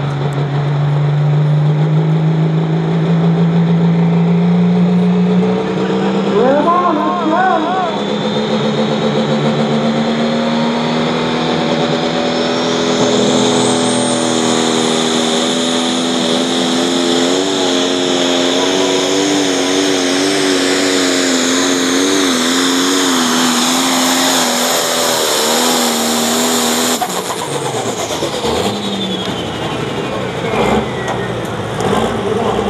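Super Pro class pulling tractor's turbocharged diesel engine running flat out through a full pull, the engine pitch climbing and a high turbo whine rising to a scream halfway through. Near the end the engine cuts off abruptly and the turbo whine winds down.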